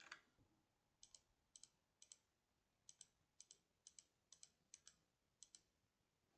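Faint computer mouse clicking: about nine quick pairs of clicks, roughly one pair every half second, starting about a second in.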